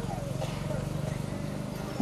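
A steady low buzz with a fast, even pulse.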